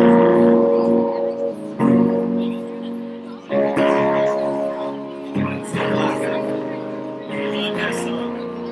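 Electric guitar strumming chords, each struck and left to ring, a new chord about every two seconds.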